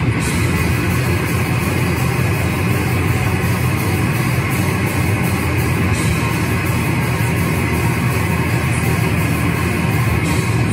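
A live band playing loud and without a break on electric guitar, bass guitar and drum kit, with cymbals hit throughout.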